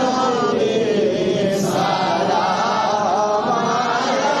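A man's voice chanting a devotional milad verse in a drawn-out, wavering melody, without instruments. There is a brief pause for breath about one and a half seconds in.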